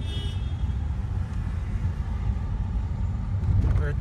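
Steady low rumble of a car driving in city traffic, heard from inside the cabin, with a brief high tone right at the start.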